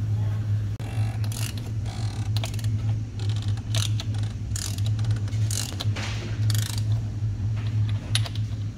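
Ratchet wrench clicking in repeated bursts as a socket turns the cap of the engine's top-mounted oil filter housing for an oil filter change. A steady low hum runs underneath.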